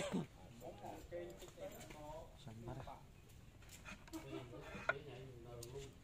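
Faint murmured voices, with a single sharp click near the end as a wooden ouk (Khmer chess) piece is set down on the wooden board.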